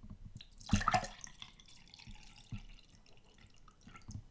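A drink being poured: liquid splashing and trickling, loudest about a second in.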